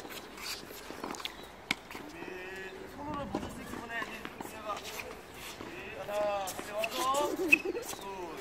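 Tennis balls struck by rackets and bouncing on a hard court, a scattering of sharp pops with the loudest near the end. People's voices come in between the hits.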